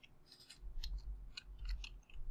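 Computer keyboard keys clicking as a spreadsheet formula is typed: about ten faint, quick keystrokes.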